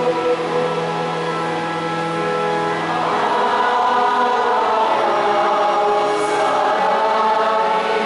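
A church choir singing a slow hymn in long held notes.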